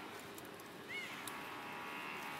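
A single short, high animal chirp about a second in, rising then falling in pitch, over steady outdoor background hiss with a few faint clicks.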